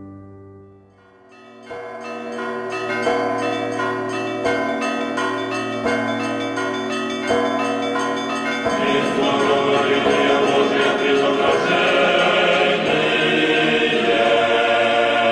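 Orthodox church bells ringing: a heavy bell strikes about every second and a half under a repeating pattern of smaller bells. About nine seconds in, the sound thickens as choir singing joins the ringing.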